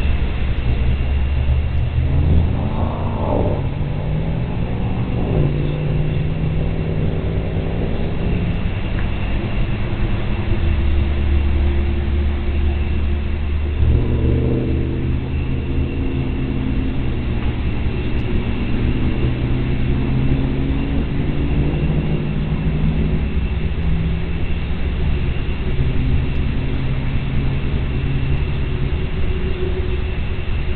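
Low engine rumble with pitched engine tones that rise and fall in pitch about three seconds in and again near the middle, then hold steady. A faint, thin, steady high tone sits above it.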